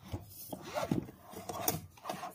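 Handling noise as the plastic monitor and its sun visor are moved about in a padded fabric case: rubbing and scraping, with a few light plastic knocks.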